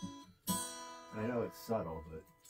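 Guitar-led rock track played back over studio monitor speakers during mixing, with a sharp strummed chord about half a second in and notes fading toward the end.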